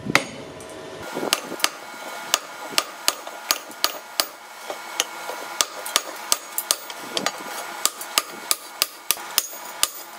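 Blacksmith's hand hammer forging red-hot steel on an anvil: a steady run of sharp blows, about three a second, each followed by a brief metallic ring.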